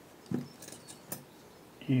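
Mostly a pause in speech: a brief low vocal murmur about a third of a second in, a few faint clicks, and a word starting at the very end.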